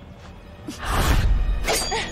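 Fantasy-drama fight sound effects for a spell being cast: a loud rushing surge with deep bass begins about a second in, and a sharp crash follows near the end, over music.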